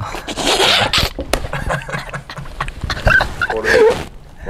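Men laughing: a breathy, wheezing burst of laughter in the first second, then scattered short bursts and pitched giggles near the end.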